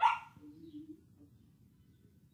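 A dog barks once, a single short, sharp bark right at the start that fades within a moment.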